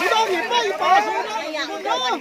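Several men's voices talking at once in overlapping chatter.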